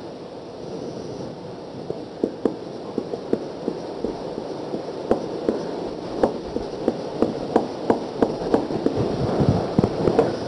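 Marker pen tapping dots onto a whiteboard: a run of short, sharp taps about three a second, starting about two seconds in, over a steady hiss.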